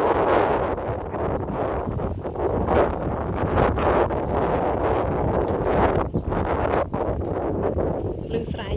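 Wind buffeting the microphone, a loud continuous rumbling rush that swells and dips irregularly.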